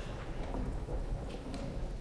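Low, steady rumble of the theatre's stage and house ambience, with a few faint footfalls on the stage floor.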